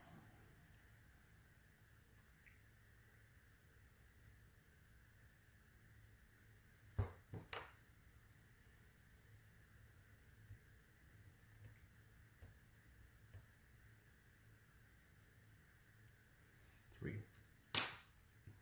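Quiet room with a faint steady hum, broken by a few soft knocks about seven seconds in and a sharp click near the end: wargame miniatures and a wooden measuring stick handled on a felt-covered gaming table.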